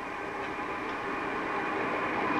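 Steady background noise: an even hiss with faint steady tones in it, slowly growing louder.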